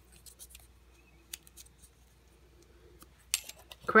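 Folded paper name slips handled and put into a cut-glass bowl: soft scattered clicks and paper rustles, with a short cluster of sharper clicks near the end.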